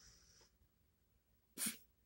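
Near silence, broken about three-quarters of the way through by one brief, sharp, breathy burst from a person, like a sneeze or a forceful exhale.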